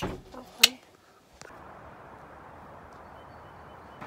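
A brief burst of voices, then a moment of silence, then a steady faint outdoor hiss that runs on evenly.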